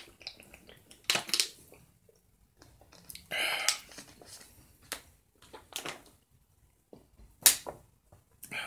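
Thin plastic water bottle crackling in the hand during a drink, then a heavy breath out through a stuffy nose, and a single sharp knock near the end as an object is set down on a wooden tabletop.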